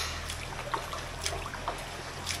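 Hot-spring pool water lapping and trickling, with a few small, short splashes.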